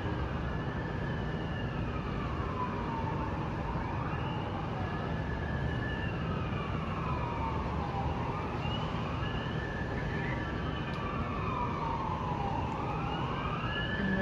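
Emergency vehicle siren wailing in the street below, its pitch rising and falling slowly about every five seconds. Steady city traffic noise runs underneath.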